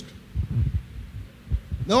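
A short pause in amplified speech, filled by a few soft, low, dull thumps, about half a second in and again just before speech resumes.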